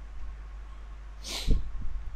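A person sneezing once, about one and a half seconds in: a short hiss that ends in a sharp burst, over a steady low hum.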